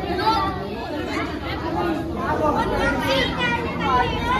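Many boys talking at once: a steady babble of overlapping chatter with no single voice standing out.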